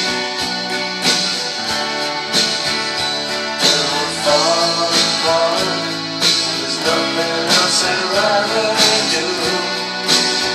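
Six-string Ibanez acoustic guitar strummed in a slow ballad, the chords ringing out, with a strong downstroke about every second and a quarter and lighter strokes between.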